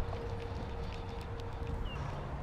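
Fly reel and rod being handled while a hooked fish is played: a few faint, light clicks over low rubbing and handling noise.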